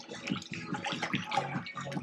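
Pool water splashing and sloshing as a child swims.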